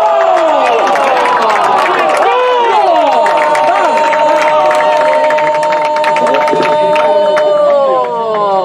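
A football commentator's goal cry: excited shouting, then one long drawn-out call held on a single pitch for about five seconds, over a crowd shouting and cheering.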